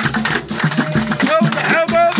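Live Moroccan beldi music: drums and rattling percussion keep a steady beat, and a singing voice with wavering, ornamented pitch comes in about halfway through.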